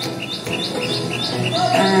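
A steady series of short, high chirps, about five a second, over soft background music.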